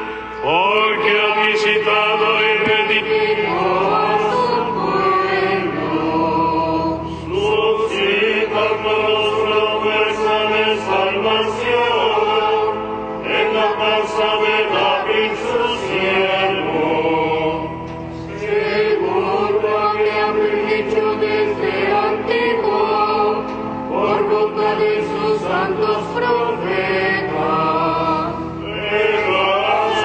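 Liturgical chant sung during Mass over a sustained accompaniment, in phrases with short breaks about every five or six seconds.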